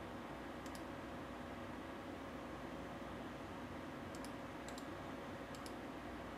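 A few faint, short clicks, singly and in pairs, over a steady low room hum.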